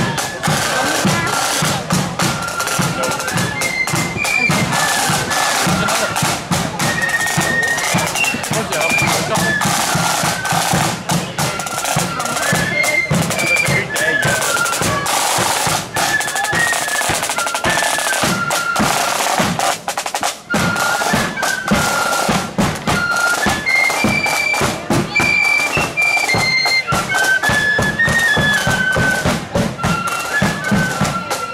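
Marching flute band playing a tune: flutes carry a high melody over rattling snare drums and the beat of a bass drum.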